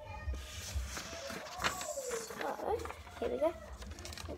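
Indistinct voice sounds, with a papery rustle in the first couple of seconds as paper is handled for cutting.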